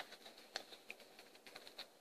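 Near silence with faint handling noise as a small baby shoe is worked onto a foot over a ruffled sock: a few soft clicks and rustles, the sharpest right at the start and another about half a second in.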